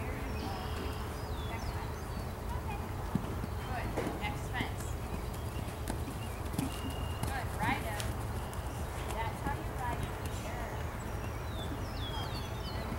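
A horse's hooves beating on the dirt of a riding arena as it canters, over a steady low rumble.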